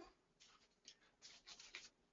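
Near silence, with a few faint, brief rustles in the middle.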